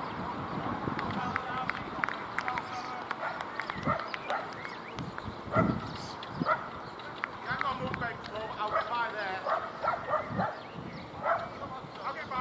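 Indistinct voices of people outdoors, with scattered short sharp sounds and chirping calls.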